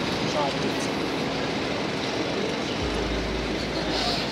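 Steady outdoor waterfront noise with a low rumble of wind buffeting the microphone in the last second or so, and faint voices of people nearby.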